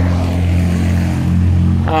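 A steady, loud, low mechanical drone, like a running motor, holding one even pitch throughout.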